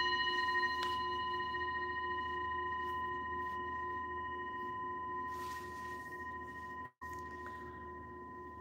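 Singing bowl ringing after a single strike: a steady low tone with several higher overtones, slowly fading. The sound cuts out for an instant about seven seconds in, then the ringing carries on faintly.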